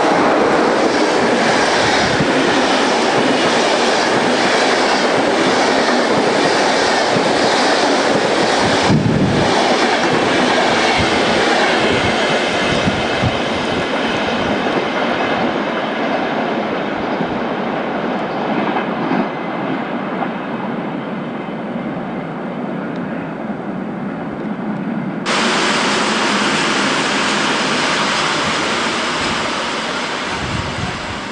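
Passenger train coaches rolling past at close range, the wheels clattering over rail joints. About 25 seconds in the sound jumps suddenly to another passing train.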